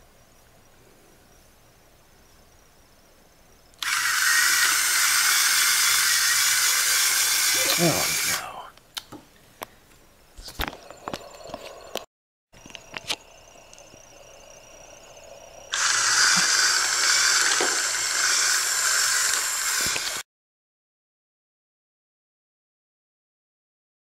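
Lego bricklayer prototype running: a high, steady whirr of its plastic gears and drive that starts abruptly, runs about four seconds and cuts off. A few sharp clicks and clacks follow, then a second run of about four seconds that also stops abruptly.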